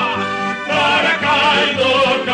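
Football club anthem sung with instrumental accompaniment, the voice holding wavering, vibrato notes over a steady backing.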